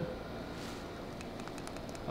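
Quiet, steady background noise of room tone with no distinct sound event.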